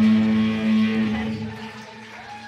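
Live rock band's electric guitars holding one sustained chord that rings out and fades away over about two seconds.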